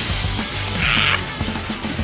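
Aerosol can of silly string spraying: a hiss lasting about a second and a half, strongest about a second in, over background music.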